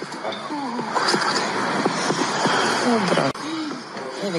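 Raised voices calling out in a crowd of people pressing together, among them a woman's call of "Dade" (older brother), over a steady noise of shuffling and movement.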